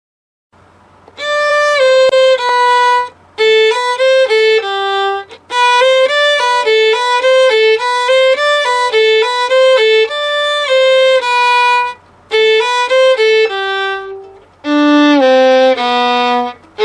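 Solo violin, bowed, playing a simple beginner's exercise melody of separate notes in short phrases with brief pauses between them, starting about a second in. Near the end the melody drops to lower notes.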